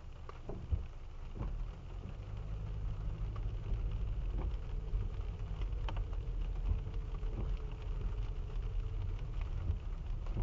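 Rain pattering on the car's windshield and body, heard from inside the cabin, over the low rumble of the Subaru Impreza, which grows about two seconds in as the car starts creeping forward on the wet road.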